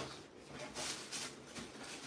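Faint rustling with a few soft knocks: a cardboard shoebox being opened and the shoes inside handled.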